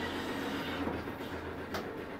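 A steady low hum with an even background rumble and a faint click near the end.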